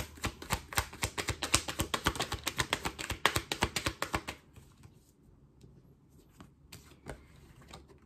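Tarot deck being shuffled by hand: a rapid run of card clicks, about ten a second, for roughly four seconds, then only a few soft taps as the cards settle.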